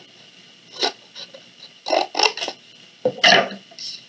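Scissors cutting a wedge out of a paper plate: several separate snips, with paper scraping between them, the loudest near the end.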